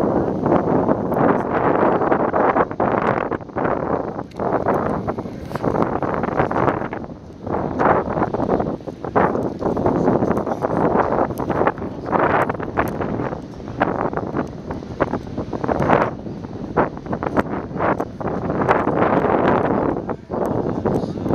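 Wind buffeting the microphone in gusts: a loud rushing noise that surges and drops unevenly, with frequent sudden jolts.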